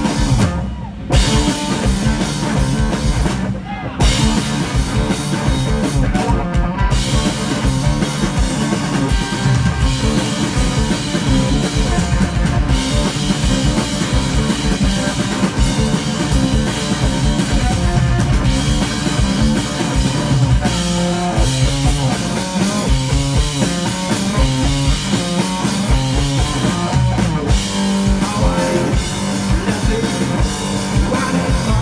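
Live rock played by a duo on electric guitar and drum kit, loud and dense, with two short breaks in the first four seconds before the band plays on without pause.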